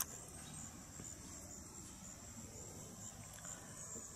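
Faint insect chorus: a steady, high-pitched pulsing trill, with a light click right at the start.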